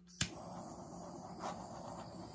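Small handheld butane torch clicking alight, then its flame hissing steadily. It is being passed over wet acrylic pour paint to bring air bubbles up and pop them.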